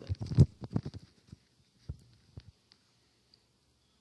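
A quick run of short clicks and knocks close to the microphone in the first second and a half, then two more single clicks about two seconds in: computer mouse clicks as the presentation is advanced to the next slide.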